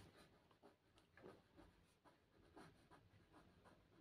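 Faint scratching of a pen writing on paper, in short, irregular strokes.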